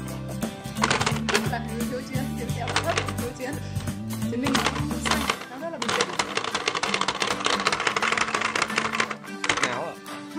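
Background music with rapid plastic clicking and tapping from a two-player hammer-fighting toy as its buttons are pressed and the plastic hammers strike. The clicks come in short bursts, then in a dense fast run through most of the second half.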